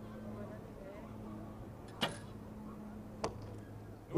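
A recurve bow is shot: the string snaps sharply on release about two seconds in, and the arrow strikes the target about a second later with a smaller click. A low steady hum runs underneath.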